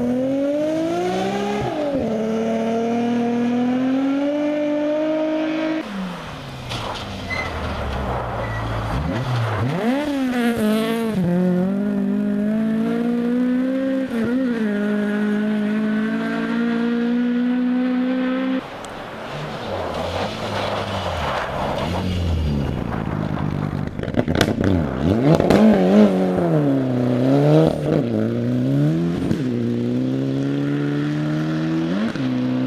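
Rally car engines revving hard, the pitch climbing and dropping again and again through gear changes as several cars in turn power through a corner and away. Near the end comes a run of sharp cracks and pops over the engine.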